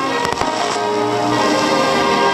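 Music of many sustained, layered tones, with a short cluster of sharp clicks about a quarter second in.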